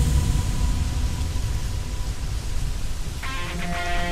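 Background music with a heavy, deep bass; sustained guitar notes come in about three seconds in.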